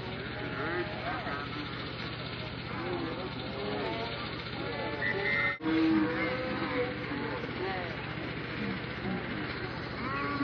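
Several voices calling out and talking over one another across a football field, with no clear words, over a steady low hum. The sound breaks off briefly about halfway through at a cut.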